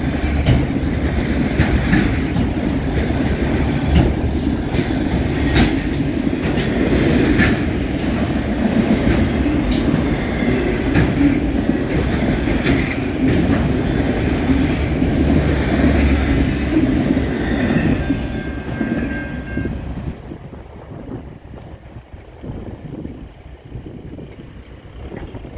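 Freight train of autorack cars rolling past close by: a steady rumble of steel wheels on rail with scattered sharp clicks and clanks. About twenty seconds in the last car goes by and the sound falls away.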